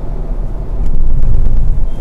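Road and engine rumble inside the cabin of a moving Hyundai i20 hatchback, growing louder about a second in.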